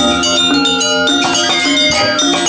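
Balinese gamelan angklung ensemble playing: bronze-keyed metallophones struck in fast patterns, ringing tones overlapping, with barrel drums and a small gong.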